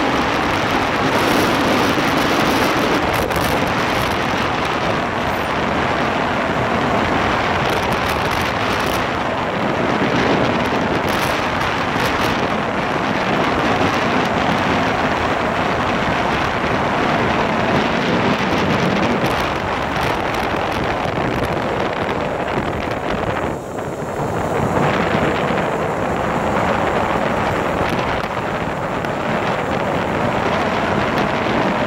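Wind rushing over the microphone of a moving motorcycle, with the engine running underneath. The noise dips briefly about three-quarters of the way through.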